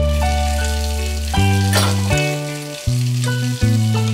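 Hiss of running water spraying from a shower, over instrumental music whose held notes change every second or so. The hiss swells briefly a little under two seconds in.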